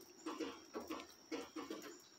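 Faint, short animal calls, about four in two seconds, each a brief pitched note.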